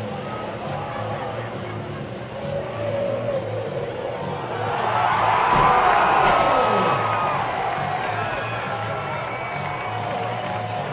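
Background music with a steady beat, with a crowd cheering over it. The cheering swells loudly about halfway through, a reaction to a school bus rolling over onto its side.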